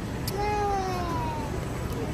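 A young child's drawn-out, whiny call that starts about a quarter second in and falls slightly in pitch over about a second.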